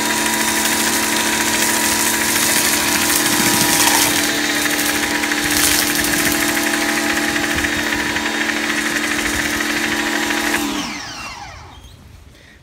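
Pressure washer running with a foam cannon spraying snow foam: a steady motor hum under the hiss of the spray. Near the end the motor's pitch slides down and it stops.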